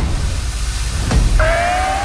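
Stage CO2 jet cannons on a coach's car blasting with a loud hiss and rumble that starts suddenly, the signal that a coach has pressed to pick the contestant. A steady rising whistle-like tone joins about one and a half seconds in.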